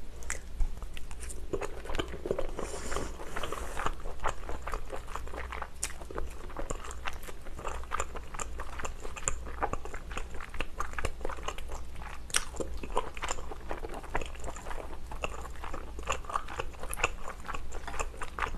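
Close-miked chewing of abalone and thick cream-sauce noodles: a dense, irregular run of small mouth clicks and smacks, over a steady low hum.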